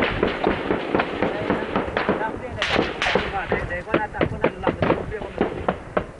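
Heavy gunfire: many sharp shots overlapping in quick, irregular succession, with voices mixed in among them.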